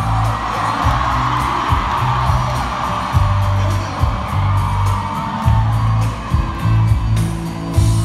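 Live pop music from an arena PA, with a heavy pulsing bass line, and a large crowd cheering and singing along, heard from high in the stands.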